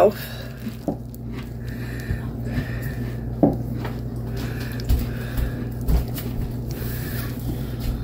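A steady low hum with faint voices in the background. A plastic bag of white icing is squeezed by hand, with a few brief soft taps and rustles.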